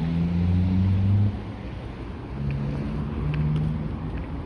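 A road vehicle's engine running as a low, steady drone. It cuts back suddenly about a second in and returns more faintly in the second half.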